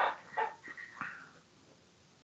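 A dog barking faintly in the background, three short barks about half a second apart, after which the audio cuts out completely.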